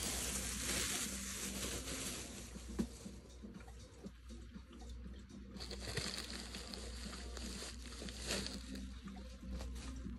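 Thin plastic wrapping bag rustling and crinkling as it is handled and pulled away, in two stretches with a quieter lull in the middle, over a steady low hum.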